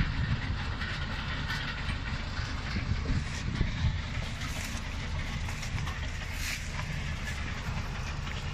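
Tractor engine running steadily while pulling a potato harvester whose digging and conveying machinery clatters continuously.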